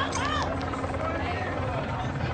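A steady low mechanical drone, with a brief voice near the start.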